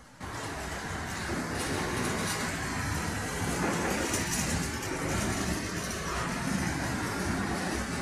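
Covered freight wagons of a passing goods train rolling by, a steady rumble of steel wheels on rail.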